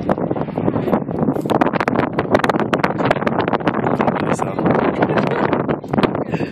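Wind buffeting the camera's microphone, a loud, continuous crackling rush.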